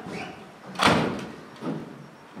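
A stage-set door being shut, closing with one loud bang a little under a second in, followed by a lighter knock.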